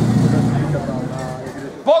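Steady low engine hum from a portable fire pump idling at the start of a fire attack, fading after about a second. Faint crowd voices run under it.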